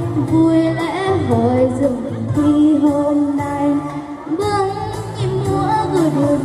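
A young girl singing a Vietnamese song into a microphone, amplified over recorded backing music, with her melody rising and falling and a steady bass line beneath.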